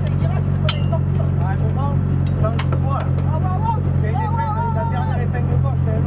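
Rally car engine idling steadily at about 1000 rpm, heard from inside the cabin, with voices talking over it.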